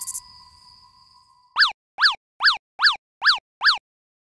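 Cartoon boing sound effects: six quick identical springy swoops, each rising then falling in pitch, about two a second. Before them a steady held tone fades away.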